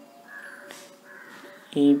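Two faint bird calls in the background, each about a third of a second long, then a voice saying 'AB' near the end.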